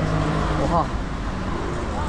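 Steady low rumble of street traffic, with a short snatch of a man's voice a little before the middle.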